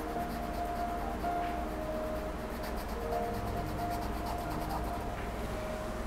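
Soft background music of long held notes that change pitch every second or so, with a faint scratch of a paintbrush stroking across canvas.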